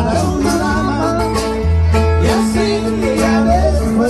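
A live band with electric guitars plays loud, amplified dance music through a PA. Sustained bass notes and a wavering lead melody run over a steady beat.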